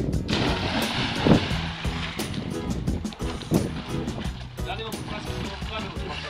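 A person diving into a swimming pool: a sudden splash about a third of a second in, with water sloshing as it dies away over the next couple of seconds, over music and voices.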